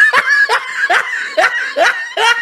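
A person laughing hard and close by: a quick run of loud "ha" bursts, about five in two seconds, each dropping in pitch.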